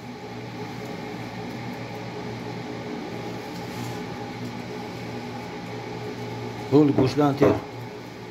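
A steady low mechanical hum, with a person speaking briefly near the end.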